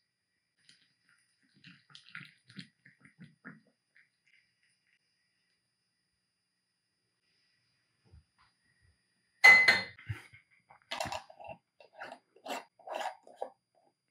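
Quiet kitchen handling sounds. A few faint taps come early on as hot pickling brine is poured from a saucepan into a glass jar of sliced red onions. About nine and a half seconds in there is a sharp metallic clank with a brief ring as the stainless saucepan is set back on the gas stove's grate, followed by scattered lighter knocks as the glass jar is handled and its lid put on.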